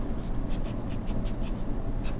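Felt-tip Sharpie marker scratching across paper in a quick run of short strokes, over a low steady hum.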